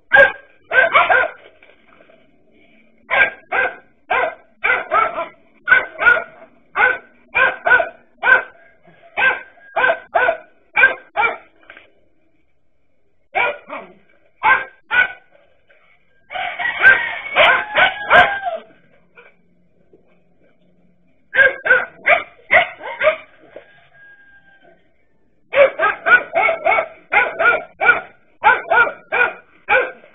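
Dachshunds barking hard in repeated runs of about two barks a second, with short pauses between runs. About two-thirds of the way through, several dogs bark at once in a dense, overlapping flurry. The sound is thin, as through a security camera's microphone.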